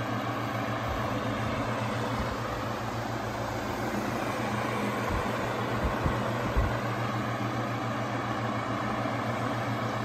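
Vintage Gambles Coronado table fan running at its single speed: a steady motor hum under an even rush of air from the blades, with a few short low thumps a little past the middle.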